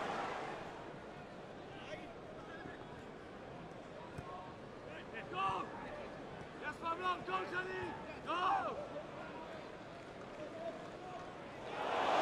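Low, steady murmur of a football stadium crowd, with a few short shouts standing out between about five and nine seconds in. The crowd noise swells near the end.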